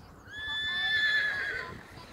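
A horse whinnying: one call about a second and a half long, high and fairly steady, wavering as it fades.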